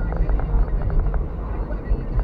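Steady low rumble of a car driving, as heard from inside the cabin through a dashcam's microphone, with a few faint irregular clicks in the first second.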